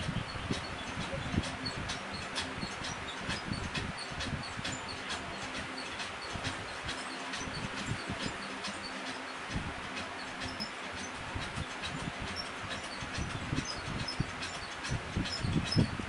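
Steady background hiss with faint scattered ticks and small high chirps throughout.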